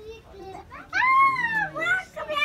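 A young child's high-pitched voice: a long wordless vocal sound that starts about a second in, rises and then falls in pitch, with softer voice sounds before it.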